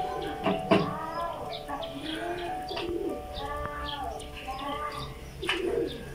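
Birds calling in short repeated calls, with a few sharp knocks.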